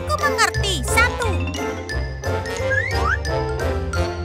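Upbeat children's background music with a steady beat and jingling bells, overlaid with cartoon sound effects: quick falling whistle-like glides in the first second or so and two short rising glides about three seconds in.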